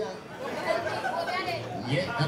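Indistinct speech and chatter from people talking.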